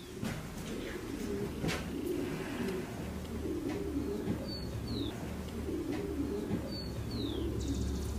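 Birds calling over a low, continuous rumble: a pair of short, high, falling chirps comes about halfway through and again near the end.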